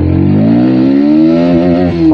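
Bajaj Pulsar NS160's 160 cc single-cylinder engine pulling hard in gear as the motorcycle accelerates, its pitch rising steadily.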